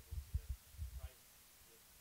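Faint, off-microphone speech, an audience member putting a question, over low thumps and rumble in the first second or so; after that, quiet room tone.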